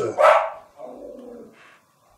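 A dog barks once, sharply, near the start, followed by a fainter, lower sound about a second in.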